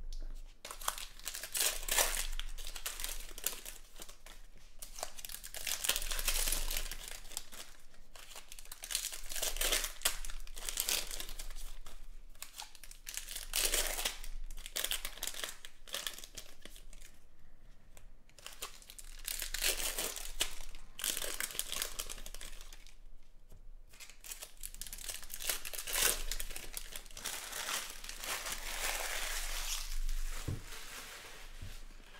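Foil wrappers of Panini Prizm football card packs being torn open and crinkled by hand. It comes in repeated spells of crackling every few seconds as pack after pack is opened.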